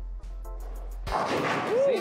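Bowling pins crashing about a second in, a dense clatter that carries on, with a short whoop near the end over background music.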